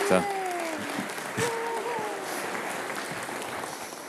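Congregation applauding, with a couple of voices calling out over the clapping in the first two seconds; the applause fades away near the end.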